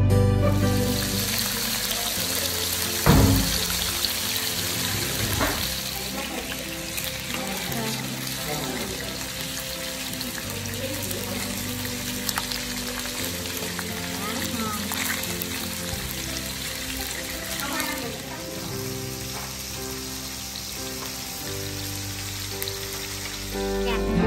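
Pieces of catfish fillet sizzling steadily as they fry in oil in a nonstick pan, with a couple of sharp knocks about three and five seconds in. Background music plays underneath.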